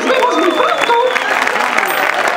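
Audience applauding, with voices calling out over the clapping in the first second.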